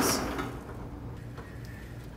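Autoslide automatic sliding-door operator running as the door slides open, set off by the newly programmed wireless IR motion sensor. The motor-and-belt noise fades away over about the first half second, leaving a faint steady hum.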